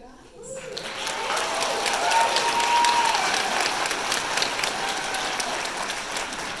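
Audience applauding, with a few voices calling out over the clapping. It builds from about half a second in and is loudest around two to three seconds.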